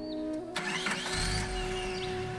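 An engine starting and running, a noisy start about half a second in followed by a low rumble, over held notes of background music.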